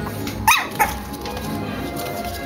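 A puppy giving two short, high yips in quick succession about half a second in, over background music.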